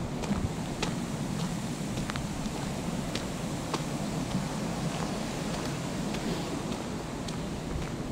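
Wind on the microphone: a steady low rumbling hiss, with scattered faint clicks throughout.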